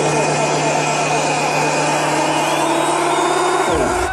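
Techno over a sound system at a build-up: a dense sweeping noise with repeating falling glides over a steady low drone, which dives downward and cuts out just before the end.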